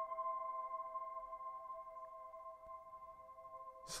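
Ambient relaxation music: a sustained chord of several steady tones, slowly getting quieter.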